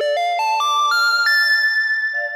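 Instrumental introduction to a Malayalam devotional song: a keyboard synthesizer melody climbing in about five quick steps, then holding one long high note.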